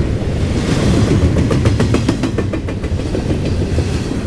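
CSX double-stack intermodal container train passing close by: loud, steady rumble of steel wheels on the rails, with a quick run of sharp clicks about a second in that ends near three seconds.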